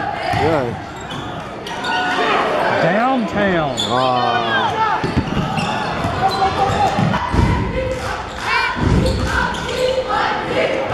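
A basketball being dribbled on a hardwood gym floor, with voices from players and spectators echoing in the gym. Two heavier thuds come in the second half.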